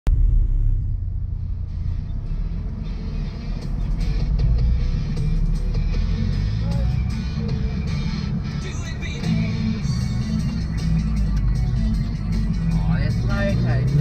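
Mazda MX-5's four-cylinder engine heard from inside the cabin, running at low revs as the car waits at the stage start. About a second before the end the revs rise as the car pulls away. Music and talk are heard underneath.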